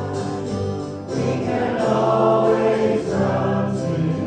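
Church congregation singing a hymn together, with long held notes; one line ends and the next begins about a second in.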